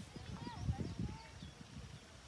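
Quiet outdoor ambience with faint distant voices and soft, irregular low knocks.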